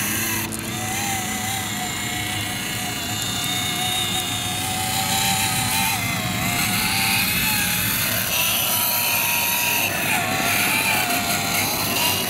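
Electric motor and gearbox of an RC scale crawler whining, the pitch rising and falling as the throttle changes, with the tyres crunching over loose gravel.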